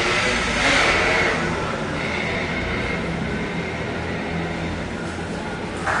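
Steady low rumble of street traffic passing outside, with faint voices under it.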